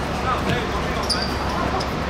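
A football kicked once on a hard court, a thud about halfway through, with players shouting around it.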